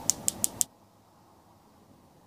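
Four quick, sharp clicks, about six a second, of long fingernails tapping on a jar of Lancôme Génifique Yeux eye cream.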